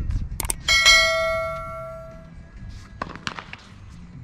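Subscribe-button sound effect: a quick double mouse click, then a bright notification-bell ding that rings out and fades over about a second and a half.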